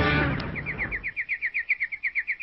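A bird trill: a rapid, even run of short falling chirps, about ten a second, starting once the music stops about half a second in.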